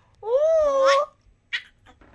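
Baby's high-pitched squeal: one drawn-out vocal cry that rises in pitch at its end, followed about half a second later by a brief, faint breathy sound.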